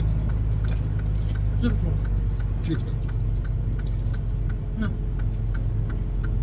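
Idling truck engine, a steady low hum heard inside the cab, with light clicks and crinkles of lettuce and foil being handled.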